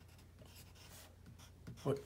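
A pen writing small figures on a white surface: a few faint, short scratching strokes.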